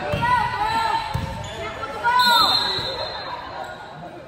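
Basketball sneakers squeaking on a hardwood gym floor and a basketball bouncing a few times, with voices in a large echoing gym.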